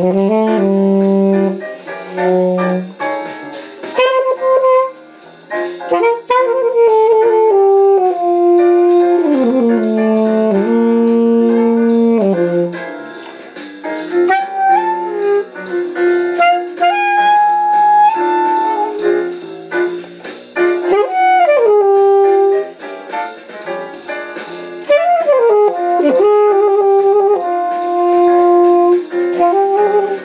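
Selmer Super Action 80 Series II alto saxophone playing a bebop jazz line, fast runs mixed with held notes and a few short pauses.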